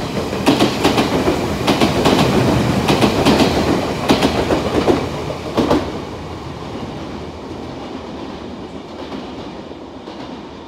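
Red Odakyu 1000 series electric train passing close by, its wheels clacking over rail joints in quick pairs for about six seconds, then easing to a quieter, steady rumble.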